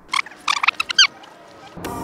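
A rewind transition sound effect: a quick run of about six high, squeaky chirps within the first second. Background music starts suddenly near the end.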